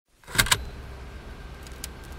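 Two quick sharp mechanical clicks about half a second in, like a video deck's transport engaging, followed by a steady low hum with faint hiss, as of a VHS tape starting to play.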